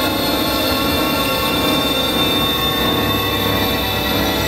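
Experimental electronic drone music: many held synthesizer tones sounding at once, low and high, with a harsh metallic, screeching edge and a steady level throughout.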